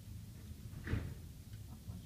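Plastic fittings of a pressure-transducer tubing set being handled: one sharp click a little before halfway, then a couple of faint ticks, over a low steady hum.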